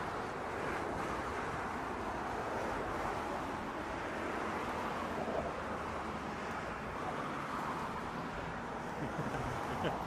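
Steady road-traffic noise from cars driving across the suspension bridge deck beside the walkway, mixed with wind on the microphone.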